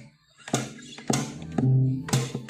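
Steel-string acoustic guitar strumming chords. The playing breaks off for a moment at the start, comes back with two sharp percussive strums about half a second apart, and then a chord rings on near the end.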